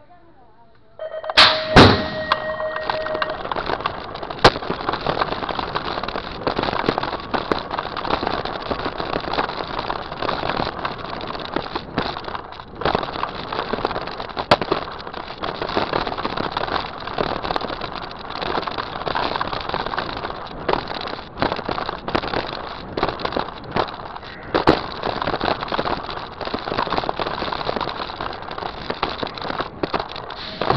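BMX start gate dropping with a sharp metal clang about a second and a half in, alongside a short steady tone. Then the bike-mounted camera picks up continuous rushing noise and many small knocks as the BMX bike rolls fast over the packed-dirt track.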